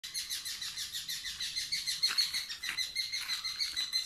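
Wild bird calling outdoors: a fast, continuous run of high chirps, about seven a second, over a steady high-pitched tone.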